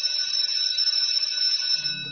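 Opening of a programme's theme music: a steady, high-pitched electronic ringing with several tones held together. Lower notes come in near the end as the tune starts.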